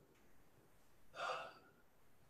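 A man's single audible breath through the open mouth, about a second in and lasting about half a second, taken as part of a guided meditation's breathing.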